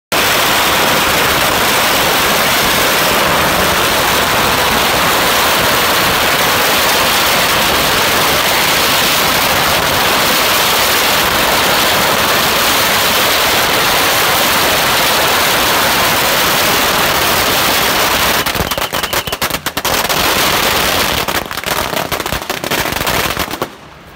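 A dense barrage of exploding firecrackers: a continuous crackling rattle that breaks into scattered separate bangs for the last several seconds and dies away just before the end.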